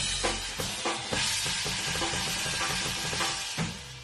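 Rock trio playing live at full volume: a dense, hissing wash of cymbals and distorted guitar over rapidly repeated low notes, with drum hits.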